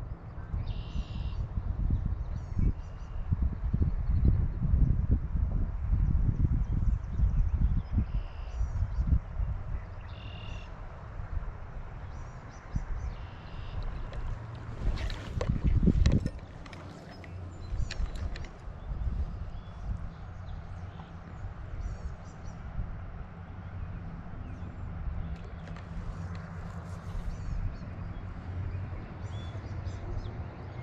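Low, uneven rumble of wind and water on the microphone, with short high bird calls now and then and a louder knock or splash about fifteen seconds in.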